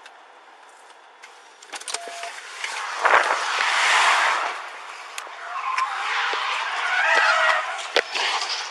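Rushing, rustling noise on a police body-camera microphone as its wearer moves fast, broken by a few clicks and knocks. A thump about three seconds in starts the loudest stretch, and the noise eases and swells again toward the end.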